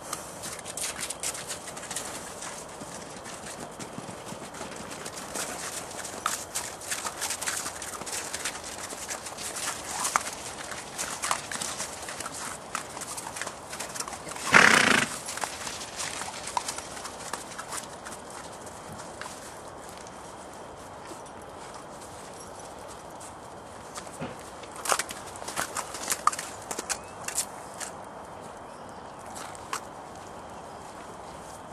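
Welsh ponies' hooves knocking and stepping on hard ground, in irregular runs of light clip-clops for the first half and again near the end. About halfway through, one loud burst lasting about a second stands out above the hooves.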